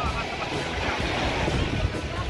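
Surf washing onto a sandy beach, a steady rush of small breaking waves, with wind buffeting the microphone.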